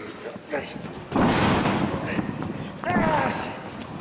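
A sudden thud about a second in as the wrestlers go down onto the ring mat, with crowd noise swelling for about a second after it. A single voice calls out near the end.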